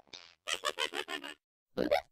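Talking Tom's cartoon cat voice run through a vocoder effect: a quick run of garbled, pitched syllables, a short pause, then another burst starting near the end.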